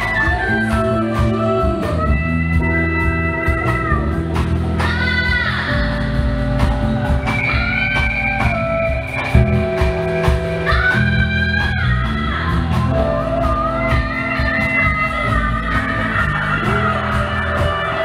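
Live synth-rock band playing: a woman singing lead over a steady drum beat, synthesizer keyboards, electric guitar and bass.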